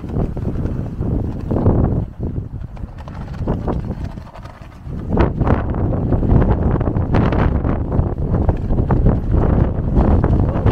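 Strong gusty wind buffeting the microphone, a low rumbling rush that comes in waves and grows stronger about halfway through.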